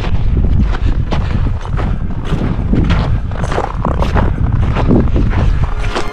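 Wind buffeting the camera microphone in a steady low rumble, with irregular crunching footsteps on snow.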